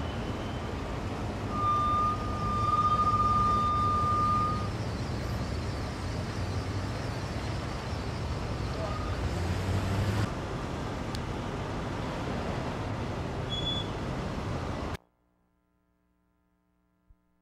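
Road traffic noise from cars crawling and idling in a busy lane, with a long steady high-pitched tone about two seconds in that lasts about three seconds. The sound cuts off suddenly near the end.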